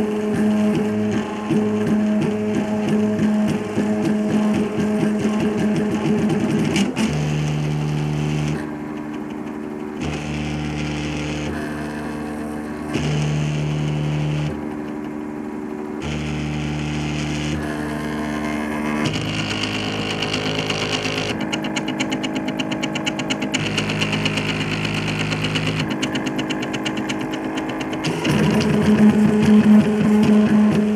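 MakerFarm Prusa i3 3D printer's stepper motors whining at a few shifting pitches while printing, as the head and bed move. There are busy rapid moves for the first several seconds, then longer strokes that start and stop every second or two, and busy moves again near the end.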